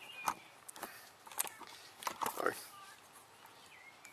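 Camera handling noise: scattered light knocks and rustles as the handheld camcorder is picked up and turned around.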